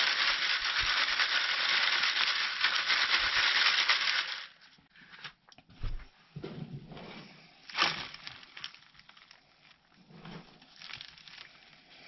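Worm castings being shaken through a wire-mesh garden sieve: a steady hissing patter for about four seconds that stops abruptly. After that come quieter, scattered rustles and crumbles of compost being handled over the screen.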